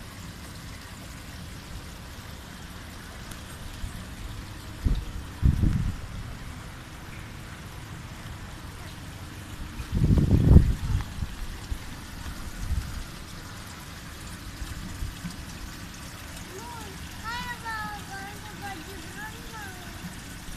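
Swimming-pool water trickling steadily, broken by two brief low bumps about five and ten seconds in, with a small child's high voice near the end.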